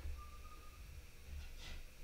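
Quiet room tone with a faint low hum, and a faint thin tone held for about half a second shortly after the start.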